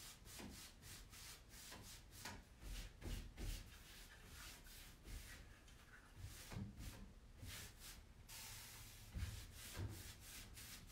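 Faint paintbrush strokes on the wardrobe, an irregular brushing about twice a second, with one longer stroke near the end.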